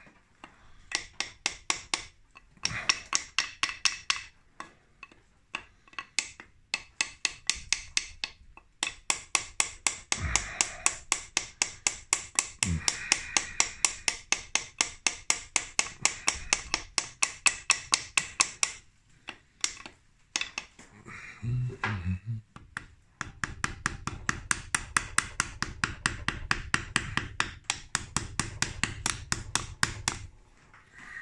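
Rapid light hammer taps, about three to four a second in long runs with short pauses, driving a crankshaft oil seal into the left crankcase of a Harley-Davidson Sportster XL 1200. The seal resists and does not seat.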